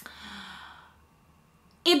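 A woman's audible breath between phrases, opening with a small mouth click and fading out over about a second.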